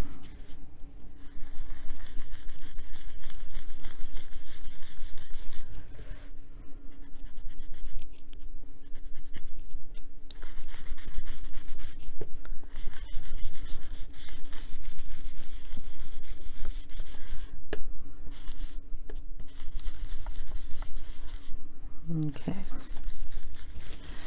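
Foam ink blending tool scrubbed over paper, rubbing ink into the page in short strokes: a scratchy scrubbing sound broken by several brief pauses.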